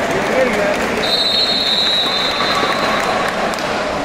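Referee's whistle blown in one long steady blast of about two and a half seconds, starting about a second in, over the chatter of a crowd of spectators.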